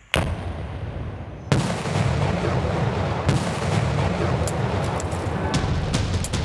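Demolition explosions destroying illegal mining equipment: one sharp blast right at the start, a second about a second and a half in, then continuous rolling noise with a few scattered cracks.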